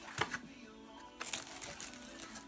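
Cardboard box and packing being handled as the box is opened: a few soft knocks and rustles. Faint music plays underneath.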